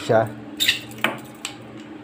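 Steel coil-spring PVC conduit bender scraping against a tight 20 mm PVC conduit as it is worked out of the pipe end, then knocking on the table as it is set down: a brief metallic rasp about half a second in, then two sharp knocks.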